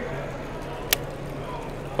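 Background of a large exhibition hall: an even noise with a steady low hum, broken by a single sharp click about a second in.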